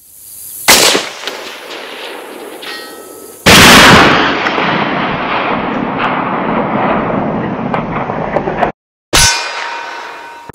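Edited sound effects: a sharp clang about a second in, then a loud sudden crash that fades slowly and cuts off abruptly, followed by another sharp hit with a ringing tone.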